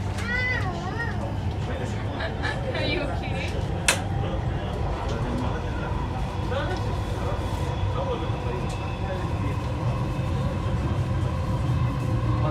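Steady low rumble of a Dubai Metro electric train running along an elevated track, heard from inside the carriage. Passengers' voices sound over it, including a high, wavering voice near the start, and there is a sharp click about four seconds in.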